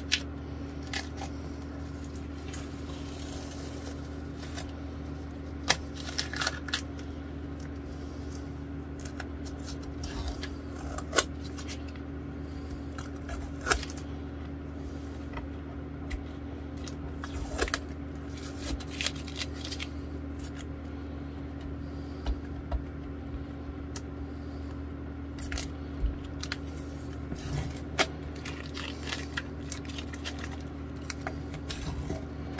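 Workbench handling noise while fretboard conditioner is worked into a bass guitar's fretboard by hand and with a cloth: soft rubbing broken by scattered sharp clicks and taps, about one every few seconds. A steady low hum runs underneath.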